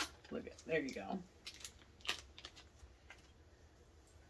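The wrapper on a small piece of cheese being peeled open and handled, a few sharp crinkling clicks and faint rustles, after a short laugh in the first second.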